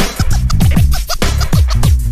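Turntable scratching over a hip hop beat: short pitch-sliding scratches cut across quick drum hits and heavy bass notes that slide downward.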